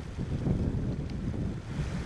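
Wind buffeting the microphone in the rain: a low, uneven rumble.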